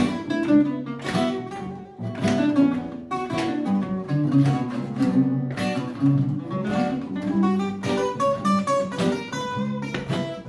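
Three acoustic guitars playing a blues tune together without singing: picked melody lines over chords, with a sharp strummed chord every second or two.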